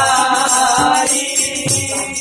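Sikh shabad kirtan: a child's voice singing with harmonium and tabla. The sung line is heard in the first second, then the harmonium's held chords carry on, with tabla strokes underneath.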